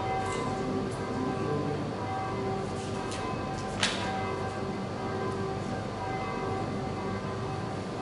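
Church bells ringing, many overlapping tones held and hanging in the air, with a sharp click about four seconds in.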